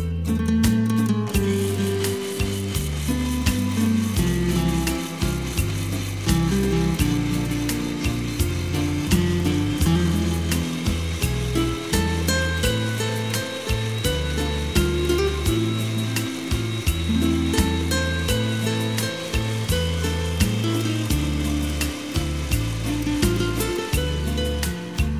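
Electric mixer grinder starts about a second in and runs steadily, grinding finger millet (ragi) with water to make ragi milk. Background music with a bass line plays under it.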